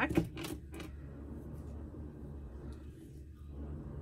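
A steady low mechanical drone, described as very noisy, with a few light clicks from handling craft materials in the first second.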